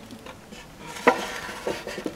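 Knocks and clicks against wooden church furniture: one sharp click about a second in with a brief ring, then a few lighter knocks.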